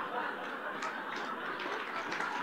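Audience laughing: a roomful of scattered laughter and chuckles.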